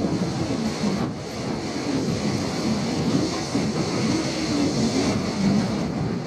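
Seibu New 2000 series electric cars, towed unpowered by a diesel locomotive, rolling slowly past as the train pulls away: steady wheel-on-rail running noise with a wavering low drone underneath.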